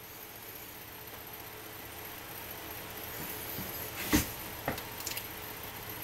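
Homemade coil-and-magnet DC motor, an enamelled copper wire coil spinning fast on its axle in bent-wire supports at about one and a half volts, as a steady noise that grows slightly louder. Two sharp clicks come a little after four seconds in, about half a second apart.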